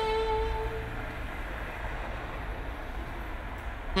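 A held saxophone note dies away about a second in, leaving a steady low rumbling noise.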